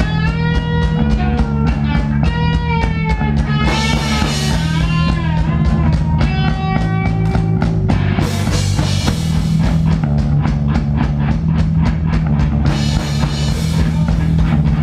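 A live rock band playing: electric guitar and bass guitar over a drum kit keeping a steady beat. A bending, wavering melody line runs through the first half, then drops out and cymbals fill in more densely.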